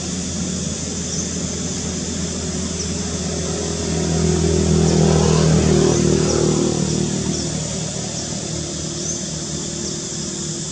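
A motor vehicle drives past, its engine noise swelling to a peak about halfway through and then fading away, over a steady high-pitched hiss with faint short chirps.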